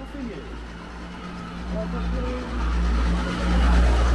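A motor vehicle engine running close by with a low, steady hum that grows louder toward the end.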